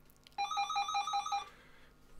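A telephone's electronic ringer trilling once for about a second, a fast two-pitch warble signalling an incoming call.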